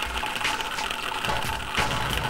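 Experimental electronic music: a dense noisy texture with clicks and low thuds at uneven intervals, the loudest click and thud near the end.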